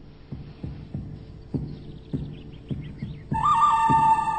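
A heartbeat sound effect: low thumps about twice a second over a low hum. About three seconds in, a loud sustained chord of steady tones breaks in as closing music.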